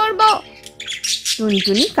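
Bird chirping and tweeting, with bits of a cartoon character's voice at the start and again near the end.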